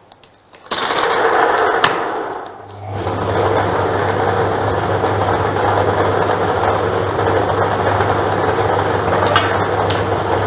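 A three-chamber lottery draw machine mixing numbered balls, with a dense clatter of balls as it starts. After a short lull, a steady motor hum sets in under the continuous rattle of the balls tumbling in the chambers.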